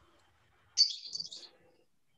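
A brief high-pitched chirping sound, like a small bird, comes in several quick pieces starting about a second in and lasting under a second. Faint room tone lies around it.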